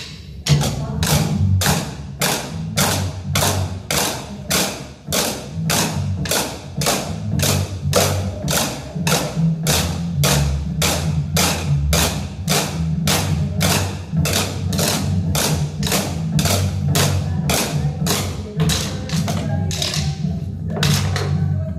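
A group of drumsticks striking plastic chairs in unison in a steady beat of about two strikes a second, over a backing music track.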